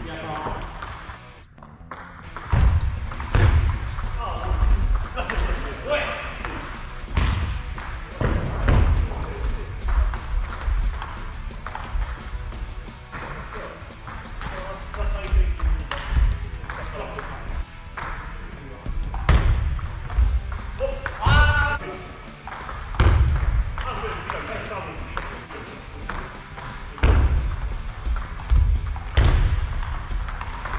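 Table tennis rallies: the ball repeatedly clicking off the paddles and bouncing on the table in quick, irregular strokes, with pauses between points.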